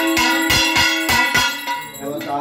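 Puja bells rung in a steady rhythm during an arati, about three strikes a second, each leaving a ringing tone, over a held note.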